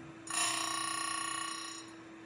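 A single bell-like ringing tone that starts sharply about a quarter second in and fades over about a second and a half, over a steady electrical hum.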